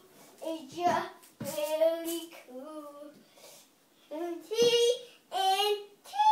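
A five-year-old boy singing unaccompanied, in short phrases with a few held notes and brief pauses between them.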